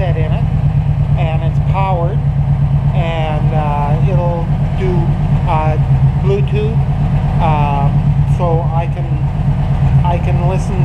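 Kawasaki Vulcan 1700 Nomad's V-twin engine idling steadily, with a man's voice talking over it.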